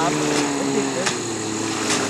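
10 hp outboard motor on an 8 ft hydroplane running at speed across the water: a steady droning note that drops slightly in pitch about halfway through.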